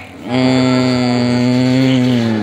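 A single long, loud held note with rich overtones from a cartoon's soundtrack, played through a phone's speaker; it starts about a third of a second in and holds steady.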